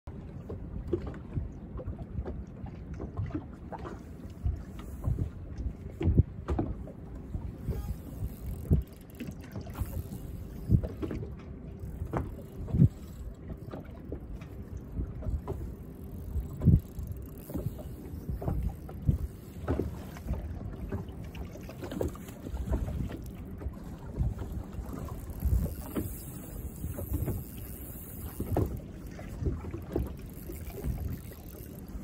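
Wind buffeting the microphone on an open boat, with small waves knocking against the hull in irregular low thumps.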